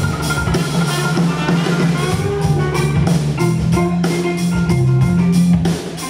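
A small band playing live: electric guitar and a drum kit, with steady cymbal strokes a few times a second over sustained guitar notes.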